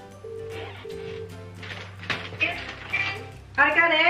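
Telephone ringback tone heard through a phone's speaker: one double ring, two short steady tones with a brief gap, showing a call going out and not yet answered. Background music runs underneath, and a voice comes in near the end.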